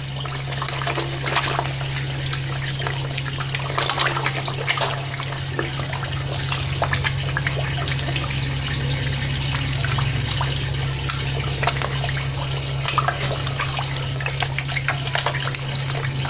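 Water splashing and slurping as a crowd of koi thrash and jostle at the pond surface around a hand, in many irregular small splashes, over a steady low hum.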